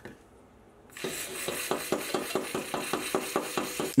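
Red-hot steel gear hob being quenched in a cut-down tin can, giving a rapid crackling sizzle of about eight to ten crackles a second that starts about a second in. It comes after a single click just at the start.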